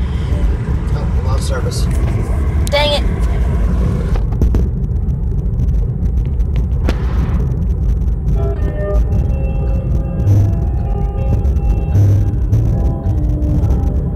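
Steady low road-and-engine rumble of a moving Kia Soul heard from inside the cabin. A few brief voice sounds come in the first seconds, and music plays over the rumble in the second half.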